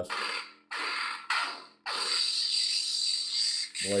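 Lightsaber sound effects played through the hilt's Proffie board and speaker: two or three short clash hits in the first two seconds, then a steady, noisy lock-up effect over the saber's low hum.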